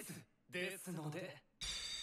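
A character in the anime speaking Japanese, fairly quietly, in short phrases. Near the end a steady ringing chime starts.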